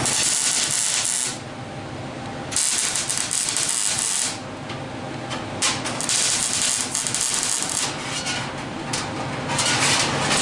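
Lincoln wire-feed (MIG) welder arc crackling on thin sheet steel as a seam is stitch-welded in short runs. There are several crackling bursts, each one to two seconds long, with brief pauses between them.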